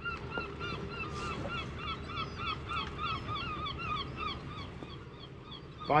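Gulls calling: a long run of short, repeated calls, about three a second, that fades out about five seconds in, over a low steady rumble.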